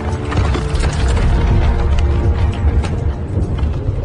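Film sound effects: rapid, irregular mechanical clicking and ratcheting over a deep, steady rumble, with music tones underneath.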